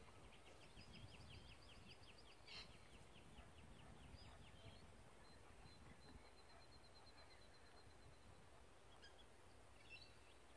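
Faint outdoor quiet with a bird calling: a rapid trill of repeated notes for the first half, then a thinner, higher trill, over a low rumble.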